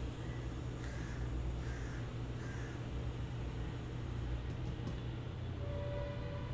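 Steady low electrical hum and room noise from the recording setup, with three faint short sounds in the first half.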